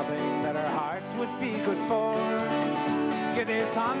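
Live country-folk band playing an up-tempo song: strummed acoustic guitar with an instrumental melody line in a break between verses, the lead vocal coming back in right at the end.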